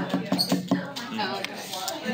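Dry-erase marker squeaking and tapping on a whiteboard, a series of short clicks with a brief high squeak, under classroom voices.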